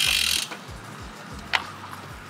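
Bicycle rear-hub freewheel buzzing briefly as the tri bike coasts past, on a DT Swiss rear wheel, over background music with a steady low beat; a sharp click about one and a half seconds in.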